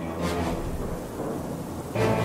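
Thunderstorm sound effect: rain and rumbling thunder over a low sustained musical tone, growing louder near the end.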